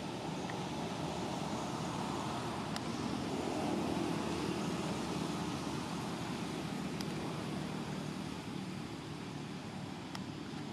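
Steady outdoor background rumble that swells a little about four seconds in, with two faint, sharp clicks.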